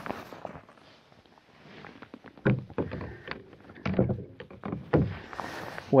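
Kayak paddle being handled and dipped into the water: several light knocks and splashes about a second apart, starting about two and a half seconds in, with a hissing splash near the end.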